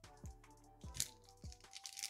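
Faint background music with a few held notes, over a few light crinkles as a Topps Chrome baseball card pack's wrapper is torn open by hand.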